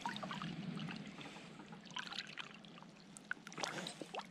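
Quiet trickling of river water with small splashes from a hand and a northern pike in the water beside a raft, as the fish is released.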